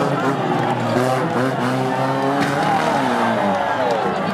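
Several banger-racing cars' engines revving in a pile-up, their pitch rising and falling over and over, with tyres spinning against the wreckage.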